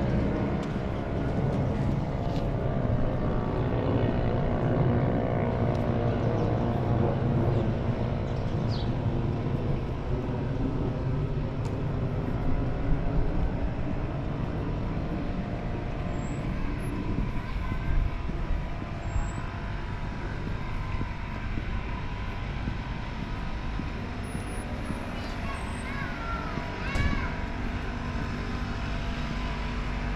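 Residential street ambience: a steady low rumble of engines and traffic, with a droning engine hum that slowly falls in pitch over the first ten seconds and then fades. A few faint high chirps come near the end.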